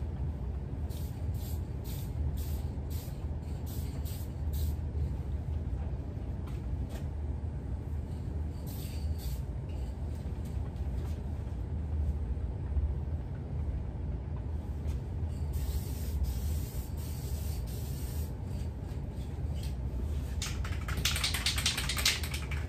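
Aerosol spray can of automotive paint hissing, at first in short bursts about two a second, and later in a longer steady spray lasting a few seconds. A fast rattle comes near the end. A steady low hum runs underneath.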